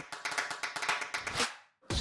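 Audience applause, a dense patter of claps that fades and cuts off about one and a half seconds in.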